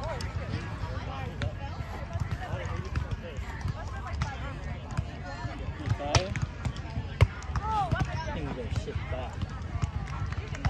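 A few sharp smacks of a volleyball being hit during a rally, the loudest about seven seconds in, over continual chatter and calls from surrounding courts.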